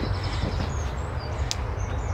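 Hands scattering and spreading crumbly home-made compost in a fabric pot, a soft rustle, over a steady low rumble. Birds chirp briefly in the background, and there is a single sharp click about one and a half seconds in.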